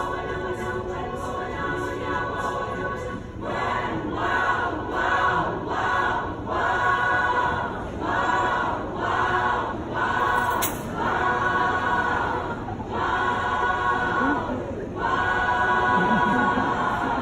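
Mixed high school choir singing: a long held chord, then from about three seconds in, short detached chords repeated about twice a second.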